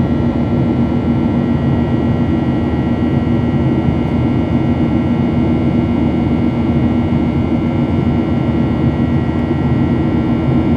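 Boeing 737-800's CFM56 turbofan engines heard inside the cabin over the wing during the climb after takeoff: a steady roar with a constant low hum and a few faint high whines.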